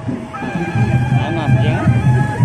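Gendang beleq ensemble playing: large Lombok drums beating a repeated low pulse under sustained ringing metal tones, with people's voices and a high wavering call over it about a second in.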